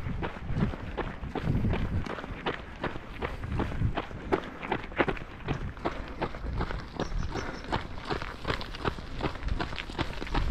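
Runners' footsteps on a gravel path in a quick, steady rhythm of strides, over a low rumble.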